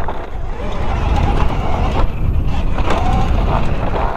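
Altis Sigma electric dirt bike being ridden over a dirt jump track: a steady low rush of wind on the microphone and tyres running over dirt.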